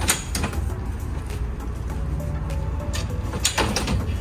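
Regal PowerTower bimini frame arms being slid up the tower's slider rods, with a sharp knock at the start and a short rattling clatter near the end, over background music.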